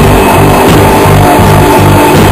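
A live rock band playing loudly, electric guitar and drums, with low notes moving every few tenths of a second under a dense, unbroken wash of sound.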